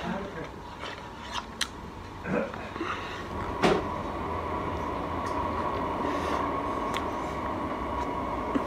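Faint chewing and mouth clicks, with one sharper click about halfway through, followed by a steady faint high-pitched hum.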